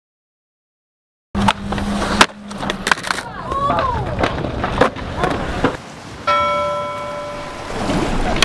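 Silence for about a second, then a skateboard trick: a steady grind ending in a loud clack of the board about two seconds in, further clacks and rolling, and brief shouts. About six seconds in, a bell-like chime rings out and slowly fades.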